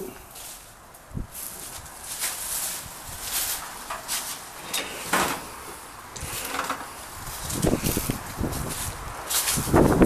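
Irregular footsteps crunching and scuffing over debris and undergrowth, about one a second, with rustling as someone walks through. Low buffeting on the microphone near the end.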